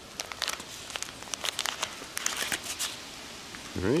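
A paper tea-bag wrapper being torn open and crinkled as the tea bag is pulled out: a quick run of crackly rustles and ticks.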